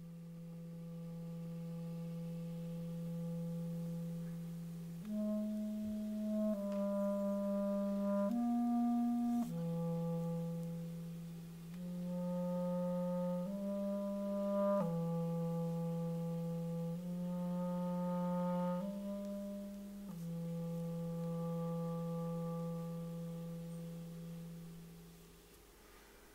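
Solo clarinet playing a slow melody of long held notes in its low register. It opens on a low note held for about five seconds, moves through shorter notes in the middle, and settles back on a long low note near the end.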